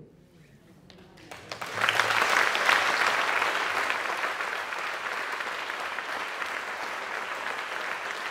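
Theatre audience applauding: a few scattered claps about a second in swell quickly into full applause, loudest soon after, then carrying on steadily and easing slightly.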